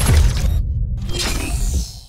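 Podcast logo sting: a produced sound-effect hit with a deep rumble under a glittering, shattering shimmer, a second swell of shimmer about a second in, fading out near the end.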